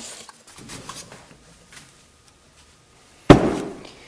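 A boxy wooden hole-saw jig being handled and set down on the wood lathe's bed: a few faint knocks, then one loud thud a little over three seconds in.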